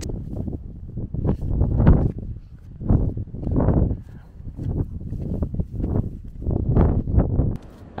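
Wind buffeting the microphone in uneven gusts: a low rushing rumble that swells and drops every second or so.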